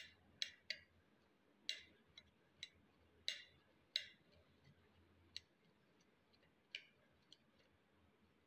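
Faint, irregular clicks and light scrapes of a knife blade against a ceramic plate as soft roasted eggplant is peeled and mashed, about a dozen ticks in all, the louder ones in the first four seconds.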